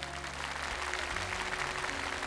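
Studio applause, a steady patter of clapping hands, with soft background music underneath.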